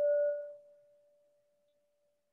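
A single clear ringing tone held at one pitch, fading quickly over the first second and then lingering faintly. A fainter higher overtone dies out within about half a second.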